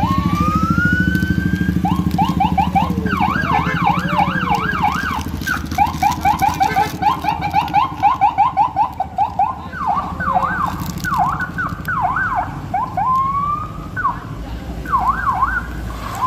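Police car's electronic siren, opening with a single rising wail and then switching between fast up-and-down yelps and rapid warbles. Vehicle engines run underneath.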